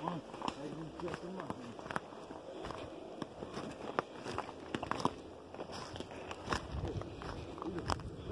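Footsteps through forest undergrowth, dry sticks and deadfall twigs cracking and snapping underfoot at irregular intervals, with voices talking faintly.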